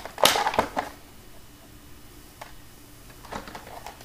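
Handling noise from a small rubbery toy pistol being picked up and brought forward: a short burst of rustling and clicks in the first second, then faint room hum with a few soft clicks near the end.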